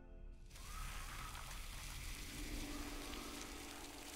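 Quiet film soundtrack bed: a soft, steady hiss like rain or rustling leaves, under faint music. A low, steady hum joins just past halfway.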